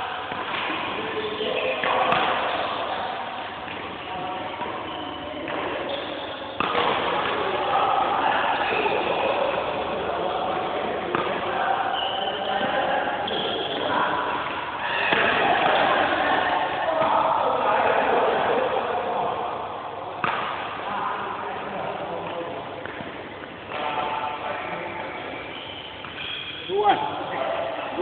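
Background voices of several people talking in an indoor sports hall, with a few sudden thuds.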